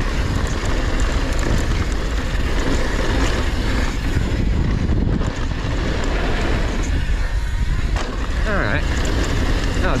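Mountain bike tyres rolling fast over a packed-dirt jump trail, mixed with wind buffeting the action camera's microphone: a steady, loud rushing noise with a heavy low rumble.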